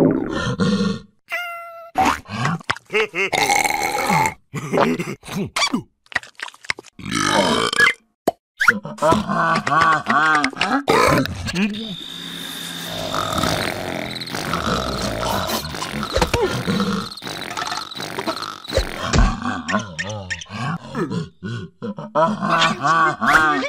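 Cartoon characters' wordless voices: grunts, yelps and gibberish mumbling, broken by short pauses and cartoon sound effects.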